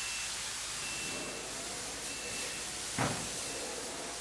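Steady hiss of spray guns applying paint to an aircraft fuselage, with a short louder burst about three seconds in.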